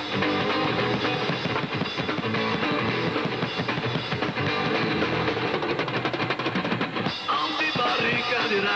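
A live rock band playing: electric guitar over a drum kit, with a steady beat.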